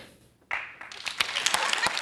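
A small group of people clapping, starting about half a second in after a brief drop-out.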